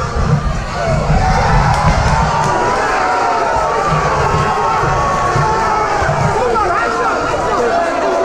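Boxing crowd cheering and shouting, many voices at once, swelling about a second in as a boxer goes down to one knee.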